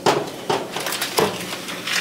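Metal sheet pans and the oven rack knocking and clattering as they are handled, about four sharp knocks in two seconds.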